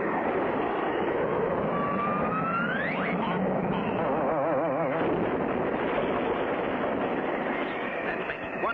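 Cartoon sound effect of a jet plane's engine, a steady rushing noise as the racer takes off. A whistle rises in pitch about two seconds in, and a wavering, warbling tone comes near the middle.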